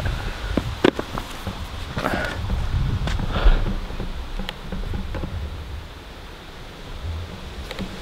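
Outdoor wind rumble and handling noise on a handheld camera being swung around, with a few light knocks.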